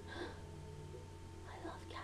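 A quiet pause in a woman's talk: a soft, whisper-like vocal sound about a quarter-second in, then she starts to speak softly near the end, over a steady low hum.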